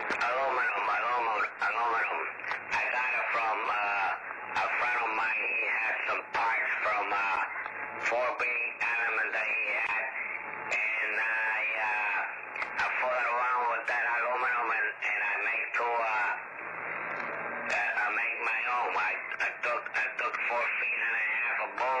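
A man's voice received over a CB radio on lower sideband, coming through the radio's speaker as thin, narrow-band speech with no bass or upper treble. He talks continuously, with only short pauses.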